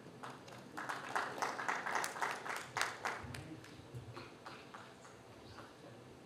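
Scattered applause from a small audience: a few people clapping, building up about a second in, dying away after about three seconds, with a few last claps before it fades out.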